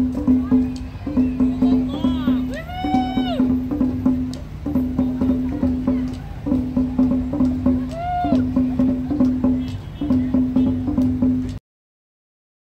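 Rally noise: a drum keeps up a steady repeated beat under the voices of the crowd, with a rising-and-falling whoop about three seconds in and another about eight seconds in. The sound cuts out suddenly just before the end.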